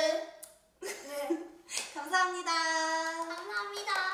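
A woman and young girls calling out together in high voices, a short call and then one long drawn-out call held at a steady pitch, with a sharp clap or two in between.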